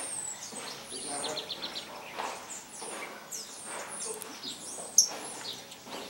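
Saffron finches calling with many short, high chirps, with a quick run of about six ticks about a second in. A single sharp click about five seconds in is the loudest sound.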